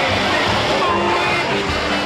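Steady rush of water in a wave pool, with faint distant voices and music over it.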